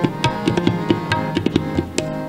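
Kirtan accompaniment without singing: quick tabla strokes over steady held harmonium notes.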